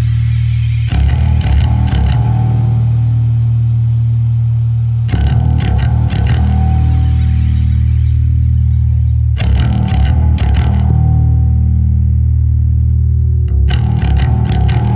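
Instrumental improvised rock music recorded on four-track tape: a droning bass guitar and an electric guitar through effects, with a phrase coming round about every four seconds.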